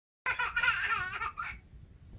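A baby laughing in a run of high-pitched giggles, delighted by a game of peekaboo; the laughter stops about one and a half seconds in.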